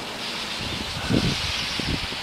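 Wind blowing over the microphone as a steady rushing hiss, with low rumbling buffets about a second in and again near the end.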